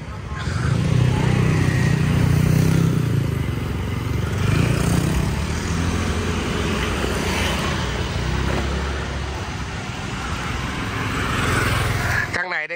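Small motorbikes and scooters passing close by on a street, their engines swelling and fading several times, loudest about a second in, over steady traffic noise.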